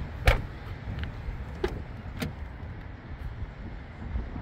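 A 2020 Chevrolet Blazer's doors being handled: one sharp knock just after the start, then lighter latch clicks about a second and a half and two seconds in as the driver's door is opened, over a steady low rumble.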